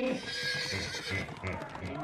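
Mixed animal noises from a crowd of animals on a wooden deck. A horse-like whinny comes at the start, with hooves clopping on the boards.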